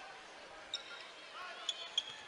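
Basketball arena ambience: a steady crowd murmur, with a few short, high squeaks of sneakers on the hardwood and the ball being dribbled.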